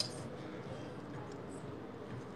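A pause in conversation: a low, steady background hiss, with a short click right at the start.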